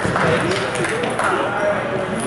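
Table tennis ball clicking on the table and paddles, a few sharp clicks, amid indistinct voices.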